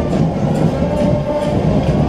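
School marching band (fanfarra) playing on parade: drums beating a steady march cadence, about two and a half strikes a second, over held tones.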